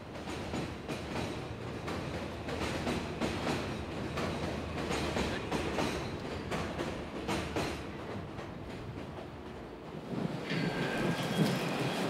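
Elevated subway train running past on its steel structure, its wheels clattering in irregular clicks over the rail joints above a steady rumble. A steady high tone sets in near the end.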